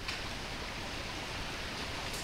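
Water rushing steadily through a beaver dam that has just been blown open, the slough draining through the breach.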